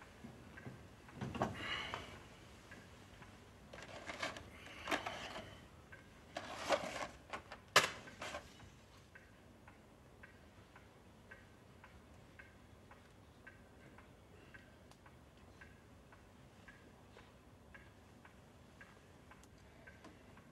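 A clock ticking steadily and faintly, about three ticks every two seconds. For the first eight seconds or so it is mixed with rustling and shuffling movement noises, and a single sharp click about eight seconds in is the loudest sound.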